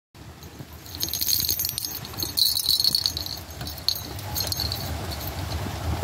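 A small bell jingling in quick, irregular shakes as a kitten plays, strongest in spurts from about a second in until past the middle, over low rustling.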